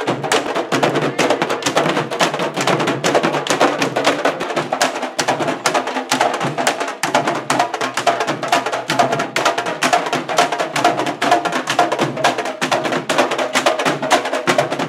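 A candombe drum section of tambores (chico, repique and piano) playing in unison, a dense, continuous rhythm of hand and stick strikes on the drumheads with sharp clicks of the sticks on the wooden shells.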